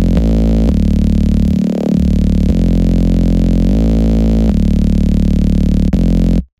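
Serum software synthesizer playing a bass-sustain preset: a phrase of long held low bass notes that changes pitch about every second. There is a brief brightening sweep about two seconds in.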